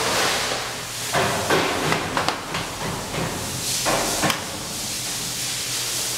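Sharp knocks and rattles of metal mesh caging as a chimpanzee handles it, over a steady hiss. There is a cluster of knocks between about one and two and a half seconds in, and two more about four seconds in.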